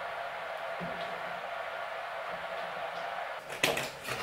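Scissors cutting a paper circle, with a couple of sharp snips a little before the end, over a steady background hiss.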